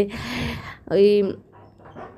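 Tap water running and splashing onto prawns in a colander in a steel sink for just under a second, then a brief syllable of a woman's voice.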